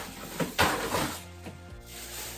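Background music, with a brief rustle of a plastic garbage bag being handled about half a second in.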